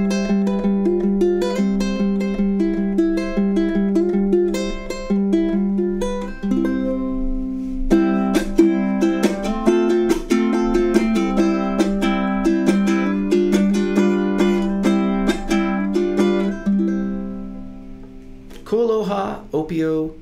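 KoAloha Opio solid acacia tenor ukulele with a low G string, played solo: plucked and strummed chords over a ringing low note. The last chord fades out about two seconds before the end, and a man's voice comes in.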